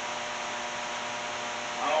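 Steady electrical hum with a hiss, holding a few faint steady tones, from equipment such as the running electrical cabinet in view.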